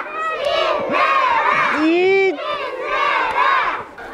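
A group of young children shouting and cheering together in high voices, calling out encouragement ('힘내라!', 'cheer up!').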